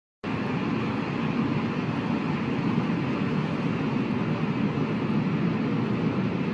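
A steady, even low noise with no tone or rhythm in it, beginning a moment in, laid under an animated channel intro.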